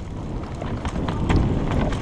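Mountain bike descending a rocky dirt trail, heard from a helmet-mounted camera: wind buffets the microphone over a steady low tyre rumble, with scattered clicks and knocks as the bike runs over stones.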